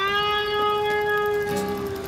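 A sustained musical drone: one steady held note rich in overtones that starts suddenly, joined by a second, lower note about one and a half seconds in.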